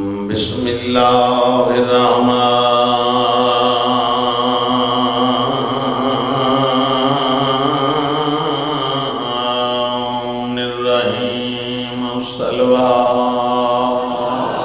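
A man's voice chanting a long, drawn-out melodic recitation: one line held for about ten seconds with slow rises and falls in pitch, then a brief break and two shorter held phrases near the end.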